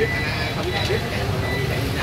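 Steady low rumble of street traffic, with faint voices talking in the background.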